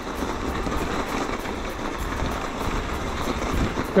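Steady rolling rumble and hiss of an e-mountain bike riding over packed snow.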